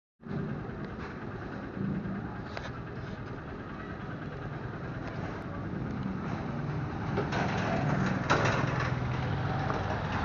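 Small motorcycle's engine running as it rides along a street, its pitch shifting and slowly growing louder, with a few sharp clicks.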